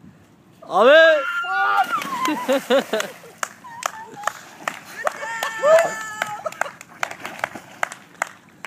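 A loud yell about a second in as a person is thrown into a swimming pool, then the splash and water churning, with whooping and laughter from the people at the poolside.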